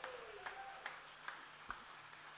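A few faint, scattered hand claps from the audience, about two a second, over a low steady hum.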